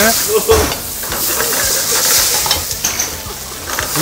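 Food sizzling and frying in a hot frying pan over a high gas flame, stirred with a utensil that scrapes and clinks against the pan.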